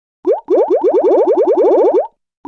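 Cartoon-style 'bloop' sound effect: short upward pitch sweeps, one on its own and then a fast even run of about ten a second.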